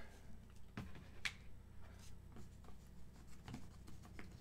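Faint taps and rustles of trading cards and card sleeves being handled on a table, with a sharper click about a second in, over a low steady hum.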